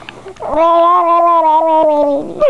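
A baby's long, steady-pitched 'aah' starting about half a second in, chopped into a rapid wah-wah flutter by an adult's hand patting over her mouth.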